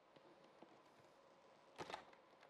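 Near silence with a few faint ticks, then one brief louder sound near the end as the glued plastic lid of a LiFePO4 battery case is lifted off.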